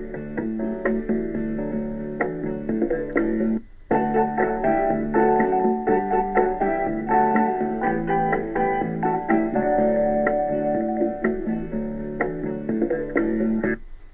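A recorded song with a voice and guitar playing back through the starter kit's audio player. A short break about four seconds in is where playback is skipped forward, and the music cuts off suddenly just before the end when playback is paused.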